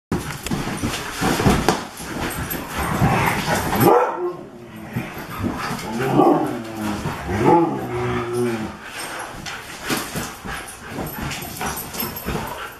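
Huskies and a Great Pyrenees cross playing rough: many quick clicks, knocks and scrabbles, heaviest in the first four seconds, with a few pitched dog vocalisations, barks and play noises, from about six to eight and a half seconds in.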